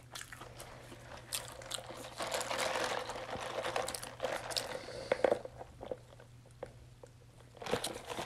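Close-miked chewing of a mouthful of Whopper Jr. burger: wet, crunchy clicks and crackles, thickest in the first half. The chewing stops for about two seconds near the end, and a few more clicks follow.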